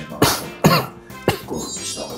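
Soft background music with three short throaty bursts from a person, about half a second apart.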